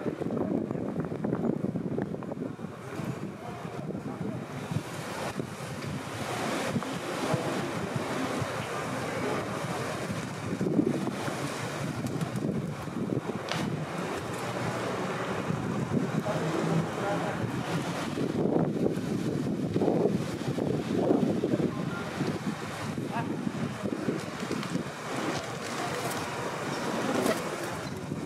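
Outdoor city ambience: a steady rush of wind on the microphone mixed with traffic noise, with voices of passers-by now and then.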